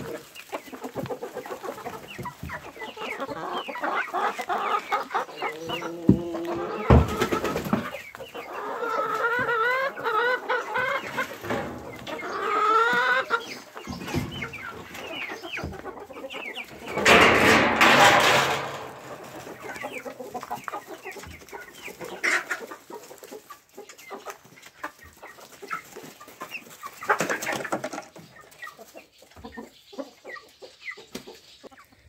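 Mixed flock of chickens clucking and calling continually, many short overlapping calls. About halfway through, a loud rushing burst lasting a second or so stands out above the calls.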